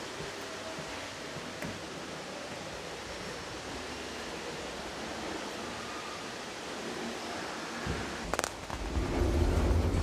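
Steady, even hiss of background noise while waiting at a lift. A little past eight seconds in comes a sharp click, then a low rumble near the end as the lift car arrives and its doors open.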